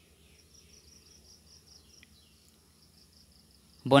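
Faint background with a high, steady chirring like insects, and a low hum underneath. A voice starts right at the end.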